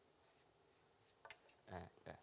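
Faint scratching of a marker writing on paper, in short strokes, with a brief murmured voice near the end.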